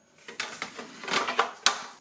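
Plastic grease drip tray sliding back into its slot in the front of an electric contact grill's metal housing: a rubbing slide that builds for about a second, ending in a sharp click near the end as it seats.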